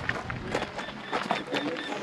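Low outdoor background of faint, distant voices with scattered small clicks.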